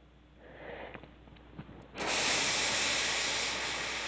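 A steady rushing hiss of air starts about two seconds in, holds for about two and a half seconds, and cuts off suddenly.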